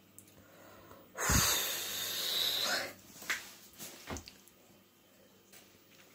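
A woman's long, heavy breath through the mouth, about a second in and lasting nearly two seconds, as she suffers the heat of very spicy food; a few faint clicks follow.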